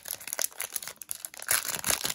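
Foil wrapper of a hockey card pack being torn open by hand: crinkling and tearing of the metallic wrapper, loudest in the last half second.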